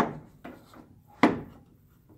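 A couple of light wooden knocks and some rubbing from a hand handling the wooden levers of a tracker organ's stop action.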